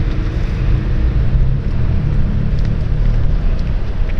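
City street traffic: a motor vehicle passing close by, heard as a steady low rumble with a hiss of tyres and engine over it.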